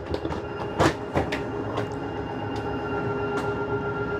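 Travel trailer's electric slide-out mechanism running as the dinette slide room extends: a steady motor hum that grows slightly louder, with a few clicks and knocks from the mechanism.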